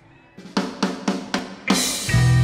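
Live drum kit playing a short lead-in: a few sharp snare and kick hits, about four a second, building to a louder cymbal crash near the end.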